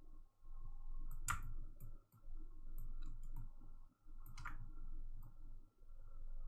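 Computer mouse clicking: two sharp clicks about three seconds apart, with fainter ticks in between.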